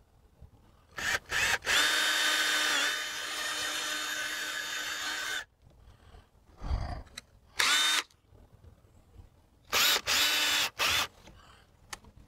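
Cordless drill with an eighth-inch bit boring rivet holes through an aluminum brace strip. It gives a few short blips, then one steady run of about three and a half seconds whose pitch dips briefly as the bit bites. A dull knock, a short burst and a final run of about a second follow.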